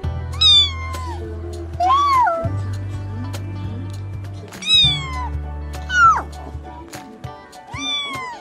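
A long-haired kitten meowing about five times, high-pitched calls that mostly fall in pitch, each under a second long, over background music.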